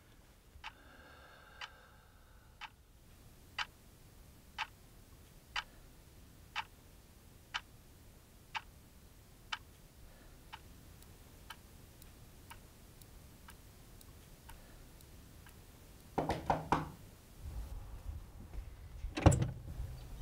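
A clock ticking steadily, about one sharp tick a second, the ticks growing fainter in the second half. Near the end come louder sounds of a different kind, the sharpest just before the end.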